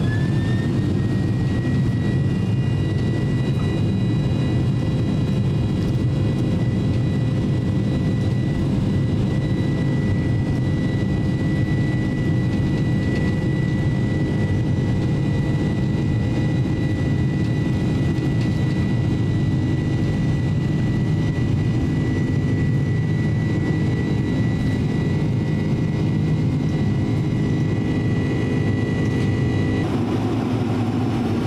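Boeing 767-300 jet engines at takeoff power, heard from inside the cabin: a loud steady roar with a whine that rises in pitch during the first second, then holds steady as the airliner rolls down the runway.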